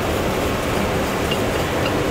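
Hand wire brush scrubbing back and forth over a TIG weld bead on an aluminum plate, a continuous scratchy noise.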